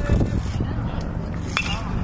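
Baseball bat hitting a pitched ball: one sharp crack with a short ringing tone, about one and a half seconds in.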